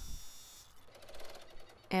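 Faint rustle of fabric being smoothed by hand over stabilizer in an embroidery hoop, with a few faint clicks near the end.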